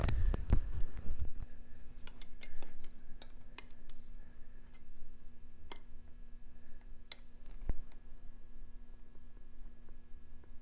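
Scattered light clicks and ticks of hands threading a small manual enricher (choke) valve into a Kawasaki KLR650 carburetor body and handling its parts, with a few soft bumps in the first second or so. A faint steady hum runs underneath.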